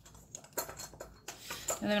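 Short wooden twig pieces clicking and knocking against one another and against a miniature bucket as they are handled and packed in, a run of small irregular taps.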